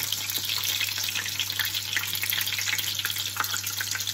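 Tempura-battered prawn shallow-frying in hot oil in a frying pan: a steady, crackling sizzle of many small pops.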